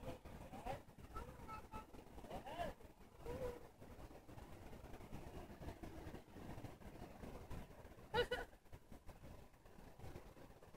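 A toddler's voice: short babbling sounds with wavering pitch, then a brief, louder squeal about eight seconds in.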